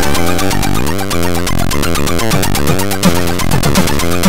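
Four-channel AHX chiptune played by Hively Tracker, Amiga-style: square-wave bass and lead voices over fast noise-channel percussion, with a quick rising pitch sweep about a second in.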